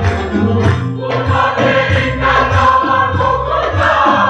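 A choir singing with instrumental accompaniment over a steady beat.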